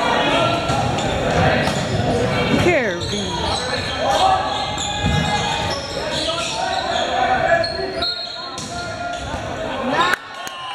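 Volleyball rally in a gymnasium: players' and spectators' voices echoing around the hall, with the thuds of the ball being struck and a squeak sliding down in pitch about three seconds in.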